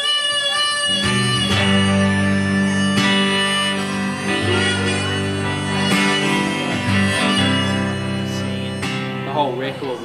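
Live folk-blues song: a harmonica playing an instrumental break in long held notes over strummed electric and acoustic guitars. Near the end the music drops away and a man's speaking voice starts.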